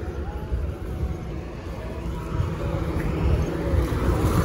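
Low, uneven rumbling background noise, with no distinct events.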